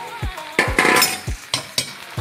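Metal spoon and ladle clinking and scraping against an iron kadai full of mashed potato, with the loudest scrape about half a second to one second in. Background music with a steady beat plays under it.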